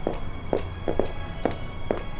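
Footsteps on hard ground, about two a second, over music with sustained steady tones.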